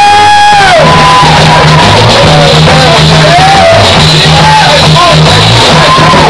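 Live rock band playing loudly: a singing voice over a rhythmic electric bass line, with electric keyboard and drums.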